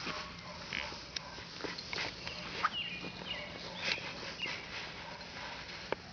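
English Setter puppy moving about and sniffing, with scattered clicks and taps. A few short high squeaks that fall in pitch come in the middle.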